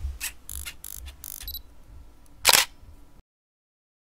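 Logo sting sound effect: a quick run of sharp clicks, then one louder snap about two and a half seconds in. It cuts off abruptly a little after three seconds.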